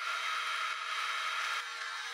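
Electric hand mixer running steadily as its wire beaters whip egg whites and sugar into meringue in a glass bowl. It starts right at the beginning: an even whirring with a steady motor whine.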